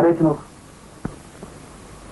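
A voice finishing a line of dialogue, then the steady hiss of an old film soundtrack with a faint click about a second in.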